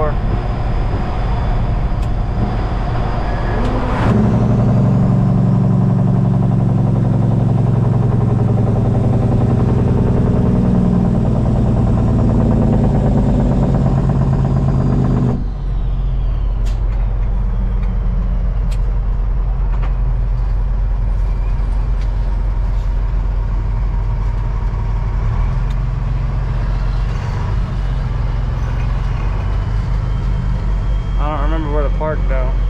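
Semi truck's diesel engine heard from inside the cab: a steady low drone that grows louder about four seconds in as the truck pulls, then drops suddenly to a quieter, lower run about halfway through as the truck slows and turns in.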